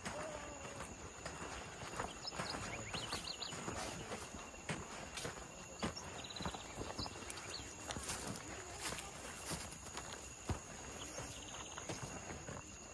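Footsteps on bare soil, an irregular run of soft knocks as someone walks between garden beds, with a couple of short high chirps.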